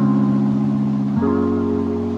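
Background music of sustained chords, with the chord changing about a second in.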